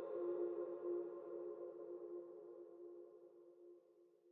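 Closing music of a trailer: one held chord ringing steadily and slowly fading away.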